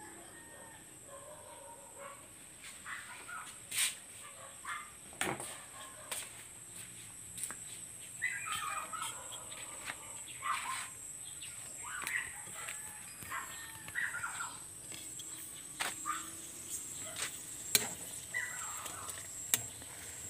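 Birds calling on and off, in short gliding calls through the second half, with scattered clicks and knocks of handling and movement.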